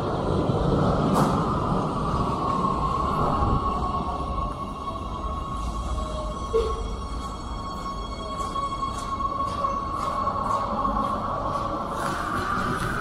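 Oslo metro (T-bane) train in an underground station: a steady low rumble with a high, even whine running throughout. Faint light ticks come in the second half.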